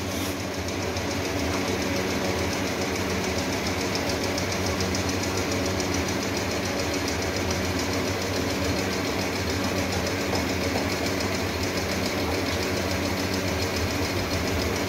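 Workshop machinery running steadily: an even machine hum with a fast, regular rattle over it.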